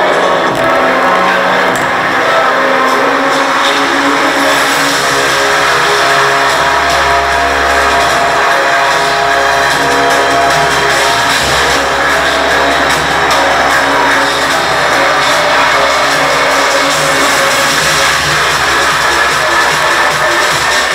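Electronic dance music played loudly through a homemade speaker cabinet fitted with a car stereo head unit and oval car speakers, with deep bass coming in about six seconds in.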